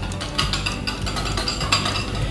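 Wire whisk clicking rapidly and unevenly against a glass bowl as egg yolk is worked into sugar.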